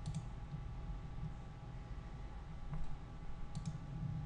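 Faint clicks of a computer mouse, a close pair about three and a half seconds in, over a low steady hum.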